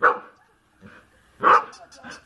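Two short barks, one right at the start and one about a second and a half in, with a fast, light ticking between and after them.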